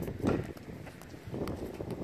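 Bare feet running on an inflated air-dome trampoline: a series of uneven soft thumps, the loudest about a quarter second in.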